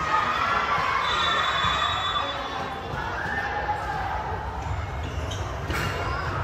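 Many children's voices shouting and cheering in a large indoor sports hall, with one sharp knock near the end.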